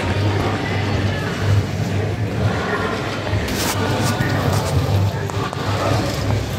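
Background music with a pulsing bass line.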